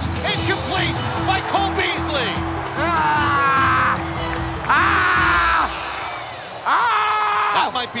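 A man's voice giving three long, drawn-out yells, each about a second, as a pass is thrown into the end zone. Background music plays underneath.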